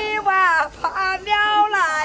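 A woman singing a Chinese mountain song (shan'ge) unaccompanied, in a high voice. She sings short phrases of held notes that slide down at their ends, with brief breaths between them.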